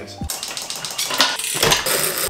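Quick metallic clicking and rattling as a road bike is fitted onto a Tacx Neo 2T direct-drive trainer: the chain and rear end knock onto the trainer's cassette and axle.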